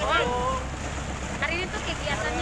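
A boat's motor runs steadily as a low drone while the boat is under way across open water, with wind buffeting the microphone and water rushing along the hull.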